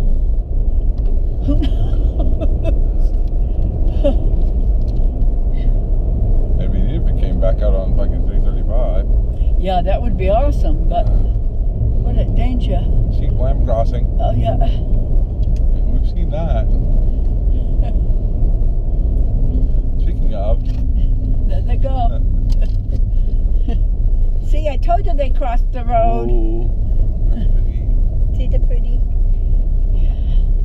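Steady low rumble of a car's engine and tyres on the road, heard from inside the moving car's cabin.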